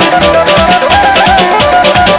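Azerbaijani wedding dance tune played live on a Korg Pa-series synthesizer: a fast, ornamented lead melody over a steady, driving drum beat.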